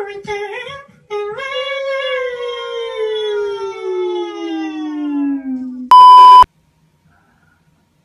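A voice holds one long note that slides slowly down in pitch for about five seconds. It is cut off by a loud, flat censor bleep tone about half a second long.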